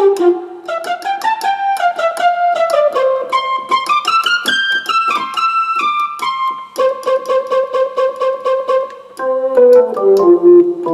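Roland RA-50 arranger module playing a piano-like keyboard voice, played from a MIDI controller keyboard: a melody of separate notes that climbs in a run and comes back down, then quick repeated notes on one pitch, about five a second, near the end.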